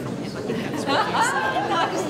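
Chatter of a gathered congregation talking among themselves, with one nearer voice standing out from about a second in.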